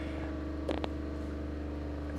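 Steady low machinery hum of a working hangar. Two short knocks come a little under a second in.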